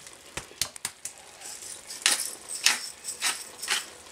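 A few light clicks from a small spice jar, then four short gritty rasps about half a second apart: a hand-held pepper mill being twisted over a pot.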